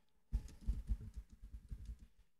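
Computer keyboard being typed on: a quick run of keystrokes, about six a second, each with a dull knock, starting about a third of a second in.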